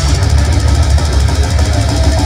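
Death metal band playing live at full volume: down-tuned electric guitar and bass over fast, pounding drums, the low end heavy and dense.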